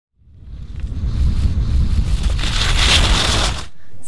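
Wind buffeting the microphone outdoors: a low rumble under a hiss. It fades in at the start, grows brighter about three seconds in, and cuts off suddenly just before the end.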